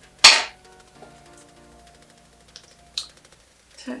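One short, loud, sharp noisy burst about a quarter of a second in, then soft background music with a couple of faint clicks.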